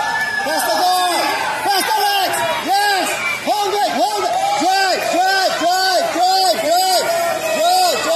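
A high-pitched voice shouting short calls over and over, about two a second, over crowd chatter: a spectator or coach yelling at a grappling match.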